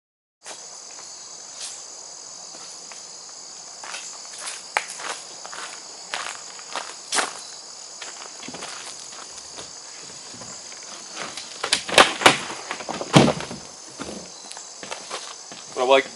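Footsteps on gravel as a Sportspal canoe is carried, over a steady chorus of crickets. About three-quarters of the way through come a few loud knocks as the canoe's hull is set down on the gravel.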